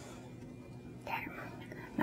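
Quiet steady electrical hum of room tone, with one brief soft breath-like vocal sound about a second in.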